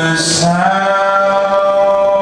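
A man singing a long held note with no words, the pitch gliding briefly and then holding steady, over an acoustic guitar.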